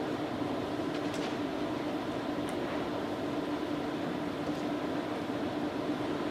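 Steady room tone of a large hall between speakers: an even low hiss with a faint hum, and a couple of faint clicks.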